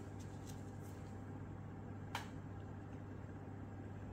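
Quiet handling of a small object at close range: a few faint ticks and one light click about two seconds in, over a steady low hum.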